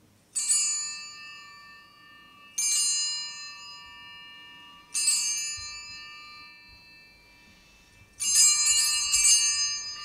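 Altar bells rung at the elevation of the chalice during the consecration at Mass. There are three single rings about two and a half seconds apart, each fading away, then a quick run of several rings near the end.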